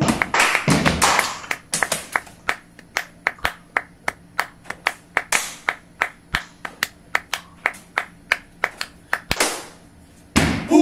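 Body percussion: hand claps and chest slaps in a fast, syncopated joropo rhythm, with a few deeper hits among the sharp claps.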